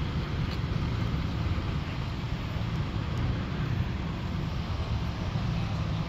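Toyota Supra (A90) with an aftermarket downpipe and E50 tune idling, a steady low rumble that holds even throughout.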